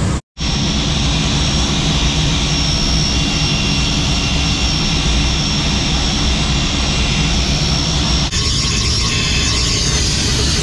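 DeWalt electric drill running steadily, its bit boring into a concrete wall, with a faint high motor whine over the grinding. Near the end the sound cuts to a hissing spray.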